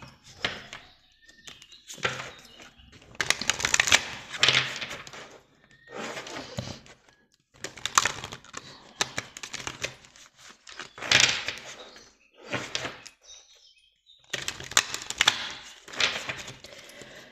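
A deck of oracle cards being shuffled by hand: spells of quick crisp flicking and clicking, separated by short pauses.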